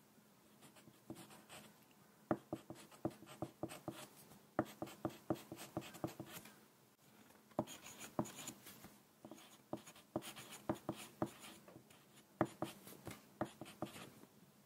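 Wooden pencil writing on paper close to the microphone: runs of short scratching strokes and taps, broken by brief pauses between words, about 7 and 12 seconds in.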